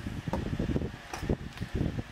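Wind buffeting the microphone, an uneven low rumble, with a few light clicks of small objects being handled.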